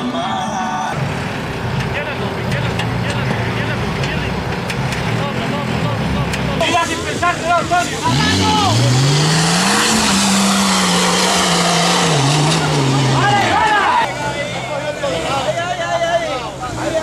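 Off-road 4x4 engines working through rough trial sections: a low, steady engine note for the first several seconds, then an engine revved hard, its pitch rising, held high for about five seconds and dropping away. Spectators shout around the revving.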